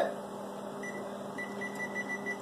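Electric oven's control panel beeping as it is set to preheat: a few short high beeps over a steady low hum.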